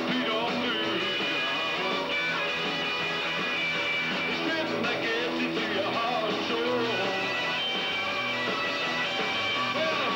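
A live rock and roll band playing: electric guitar and electric bass over a steady beat.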